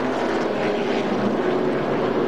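NASCAR stock cars' V8 engines running at speed, a steady drone.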